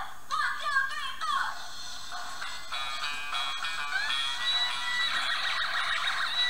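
A battery-powered L.O.L. Surprise O.M.G. Remix toy instrument plays a short recorded song clip when its numbered button is pressed. The sound is thin, with no bass. A sung line gives way to steadier notes, and a long note is held over the last couple of seconds.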